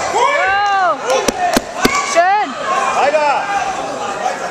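Several people shouting long calls that rise and fall in pitch, overlapping each other, with four sharp smacks between about one and two seconds in.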